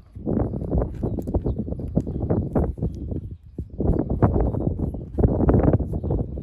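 Close handling noise: a rapid, irregular run of knocks and rubbing as a 360 camera is fitted and screwed onto its aluminium mounting pole, with short pauses between bursts.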